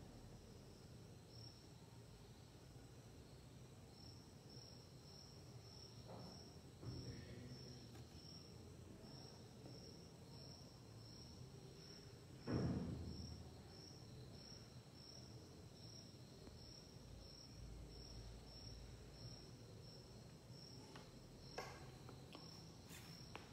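Near silence with faint high-pitched insect chirping repeating about twice a second. A single thump about twelve and a half seconds in, and a couple of faint clicks near the end.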